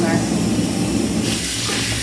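Bath tap running steadily into a tub. About a second in, the rush grows brighter as the water pours over hands held in the stream.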